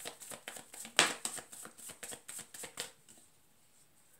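Tarot cards being shuffled by hand: a rapid run of soft card flicks and riffles, with one louder slap about a second in, stopping about three seconds in.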